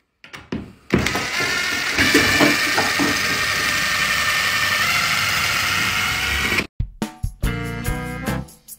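Cordless impact driver driving a screw into a metal door hinge: a loud, dense mechanical rattle with a steady whine, which starts about a second in after a few light clicks and cuts off abruptly just before the last second.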